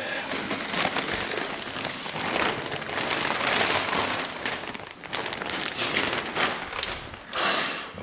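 Clear plastic bag crinkling and rustling as it is handled and pulled off a foam RC jet model, on and off, with a louder rustle near the end.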